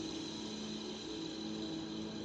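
A steady, low-level hum of several held tones, with no speech.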